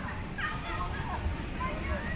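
Outdoor park ambience: wind rumble on the microphone under distant voices, with a short falling call about half a second in.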